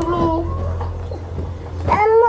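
A high cry that slides down in pitch and fades within the first half second, over a steady low hum; a louder rising cry begins right at the end.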